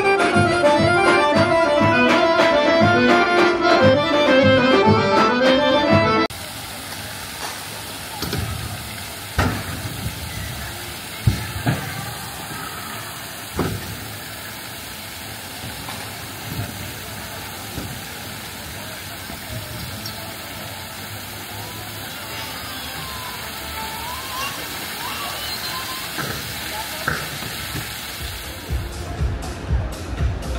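Accordion music with a steady rhythm, cut off abruptly about six seconds in. It gives way to a much quieter, even rush of fountain water, with a few sharp knocks and faint voices. Near the end, music with a beat comes in.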